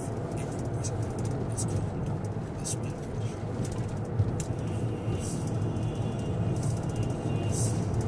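Steady road and engine noise inside a moving car's cabin, a low even hum, with brief hisses near the end as oncoming cars pass.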